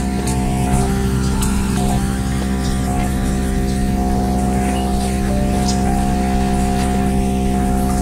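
A small bare woofer driver plays a steady 50 Hz test tone from a car amplifier: a constant low hum, buzzy with a stack of overtones. It is one step of a tone sweep to find the driver's bass resonant frequency.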